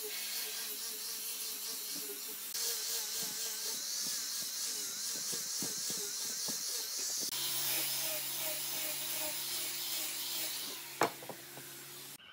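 Electric angle grinder with a sanding pad running against a peeled log: a steady motor whine under a high sanding hiss. The tone changes abruptly twice, and near the end the sound drops off with one sharp knock.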